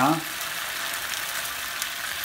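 Arborio rice cooking in chicken stock in a hot pan, a steady hiss, while a silicone spatula stirs it to keep it from sticking to the bottom.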